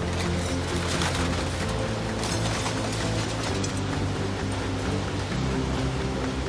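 Background music over a rattling clatter of scrap metal, the sound of a material handler's grab gripping and shifting scrapped washing machines; the clatter is strongest about half a second to a second in and again just after two seconds.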